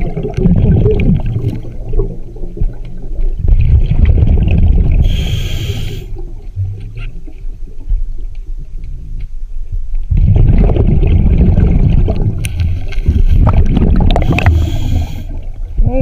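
A diver breathing through a scuba regulator underwater: long rumbling bubble bursts as each breath is exhaled, with a short sharp hiss of the regulator on the inhale a few seconds in and again near the end.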